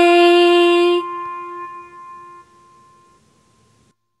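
The song's final sung note, a woman's voice holding 'way' over the backing music. It cuts off about a second in, then a few lingering tones die away.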